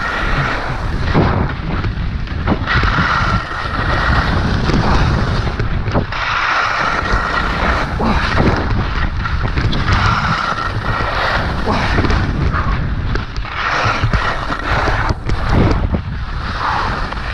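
Wind buffeting a helmet-mounted action camera's microphone during a ski run, a loud, continuous low rumble. Skis scrape over hard-packed snow in raspy spells of a second or two, about every three seconds.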